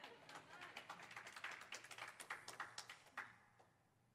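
Faint, scattered applause from a congregation, a patter of many irregular claps that dies away after about three seconds.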